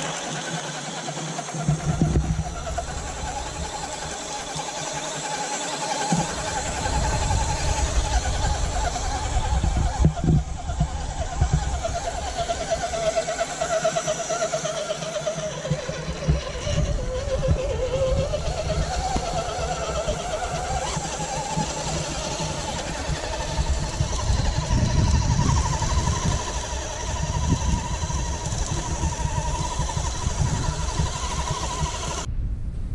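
Radio-controlled multi-axle scale truck driving through sand: its drivetrain whines steadily, the pitch rising and falling with the throttle, over a low rumbling noise.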